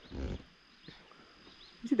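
A brief breathy vocal murmur, then near silence with a faint steady high-pitched insect drone, and a woman's speech starting again at the very end.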